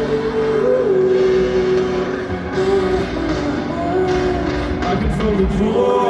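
Live band music from a festival stage, loud and heard from within the audience: drums and bass under a held, slowly bending melody line.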